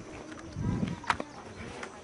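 Footsteps on grass and camcorder handling noise: a few soft thuds and a sharp click a little after a second in.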